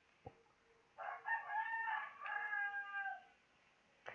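A rooster crowing once, a high call of a little over two seconds with a short break partway through.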